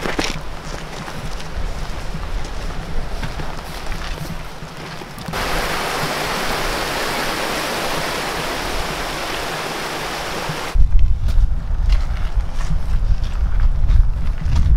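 Small waterfall rushing. About a third of the way in it becomes a loud, even hiss of falling water that starts suddenly and cuts off about three seconds before the end, where wind rumbles heavily on the microphone.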